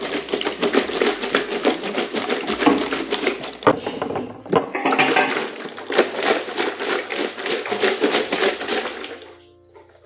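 Background music with a quick, steady beat and a bass line, fading out near the end.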